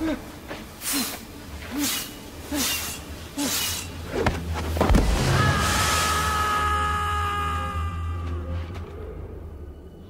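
Film fight sound effects: a run of quick swishing blows about one every 0.8 seconds, then a heavy thud about four to five seconds in. A long, high held tone follows and fades away over the last few seconds.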